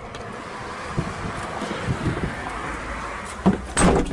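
Crank-down window on a Polaris Ranger hard-cab door being wound: a steady scraping rub of the glass in its run with a few light clicks, then one sharp knock near the end.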